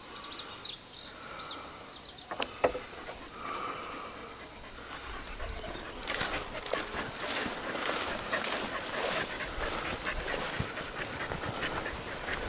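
Panting close to the microphone, with rustling steps through grass in the second half. A few short, high chirps sound in the first two seconds.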